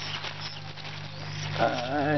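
Wet tilapia being handled among plastic bags: light rustling and watery clicks over a steady low hum. A short wavering call comes about one and a half seconds in and is the loudest sound.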